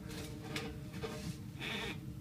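Quiet background: a steady low hum with faint rustling, in a pause between speech.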